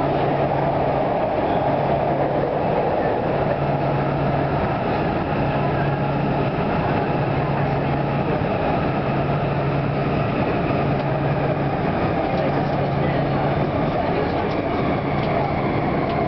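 Canada Line SkyTrain car running through a tunnel, heard from inside the car: a loud, steady rumble and rush of wheels and air. A low hum under it switches on and off every second or so.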